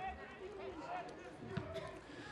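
Faint live field sound from an amateur football match: distant shouts of players on the pitch, with a soft thud of the ball being kicked about one and a half seconds in.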